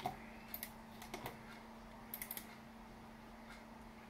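Faint, light clicks of a computer mouse, in quick pairs like double-clicks, three times over about two seconds, over a steady low hum.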